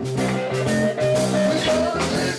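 Live blues band playing: electric guitar and drum kit under a held lead line that bends slightly in pitch.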